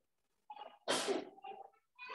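A person sneezing once: a short intake sound, then a sharp loud burst about a second in that fades away.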